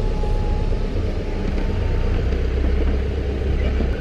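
Car engine and road rumble heard inside the cabin as the car rolls slowly forward. The low rumble grows a little stronger about halfway through.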